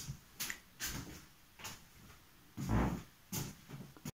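Footsteps: a run of short, irregular knocks and scuffs, roughly half a second apart, the loudest nearly three seconds in.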